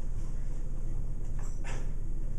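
Steady low room hum with faint classroom voices, and one short spoken word near the end.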